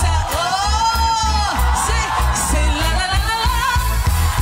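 A woman singing a gliding, ornamented melody into a microphone over live band music with a heavy bass line.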